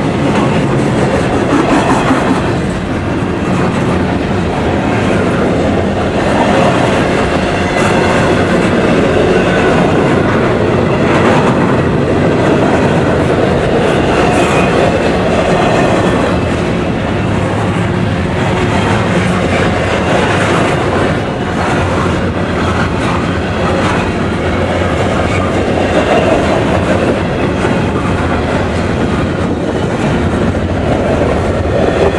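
Canadian Pacific double-stack intermodal well cars rolling past close by: a loud, steady rumble of steel wheels on rail, with occasional clicks from the wheels.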